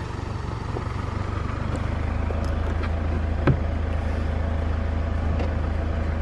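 A Range Rover's engine idling steadily, heard from just outside the car, with a faint click about halfway through.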